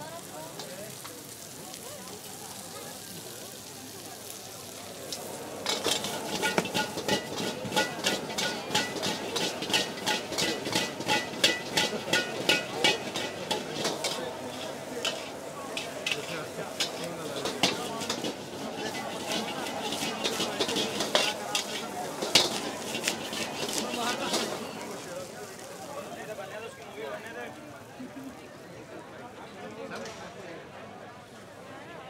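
Metal spatula and ladle clattering and scraping rapidly against a wok as shredded cabbage and chicken are stir-fried over high heat, with hot oil sizzling. The clatter starts about five seconds in, runs in quick strokes for about twenty seconds, then gives way to a softer sizzle.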